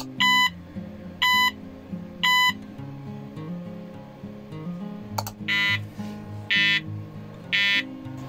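An Arduino game's buzzer beeps three times, short even beeps a second apart. About five seconds in come three more, a second apart, in a buzzier tone. A sharp click comes just before each set, over guitar background music.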